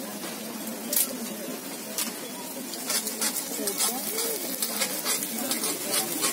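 Takoyaki batter sizzling on a takoyaki griddle, with sharp clicks of a metal pick tapping the pan as the balls are turned.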